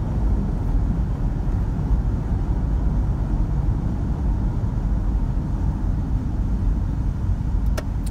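Cabin noise of a 2005 Kia Carnival minivan on the move: a steady low rumble of road, tyres and V6 engine, with no underbody rattles. A couple of faint clicks come just before the end.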